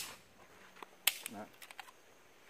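Taurus PT-100 .40 S&W pistol being handled and made safe: a few sharp metallic clicks, a clear one about a second in and a quick cluster of small ones near the end.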